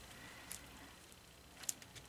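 Quiet handling: a few faint ticks, about half a second in and again near the end, as fingers press the glued ribbon around a rhinestone mesh knot on a hair bow.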